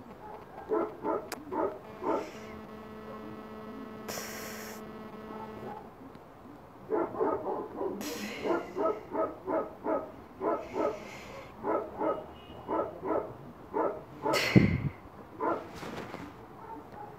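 A dog barking over and over, about two short barks a second, with a pause of a few seconds in which a steady hum is heard. Near the end, a loud bump.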